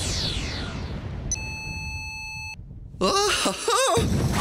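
Cartoon sound effects: a falling whoosh fades out, then a steady electronic beep holds for about a second. Near the end comes a short, strained shout from a character.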